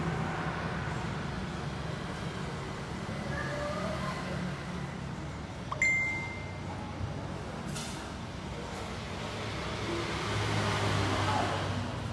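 Steady low vehicle rumble. About halfway through comes a single sharp metallic clink that rings briefly, and near the end a broader swell of noise.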